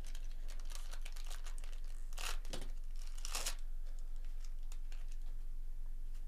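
Foil wrapper of a baseball card pack crinkling and tearing as it is ripped open, with two louder rips a little over two seconds in and about a second later, then quieter handling of the cards.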